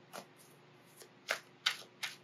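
Tarot cards being handled: a few short, crisp clicks and flicks of card against card, the loudest two near the end.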